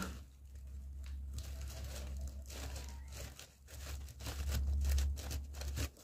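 Thin plastic carrier bag crinkling and rustling in short irregular bursts as its knotted handles are worked loose, over a low steady hum.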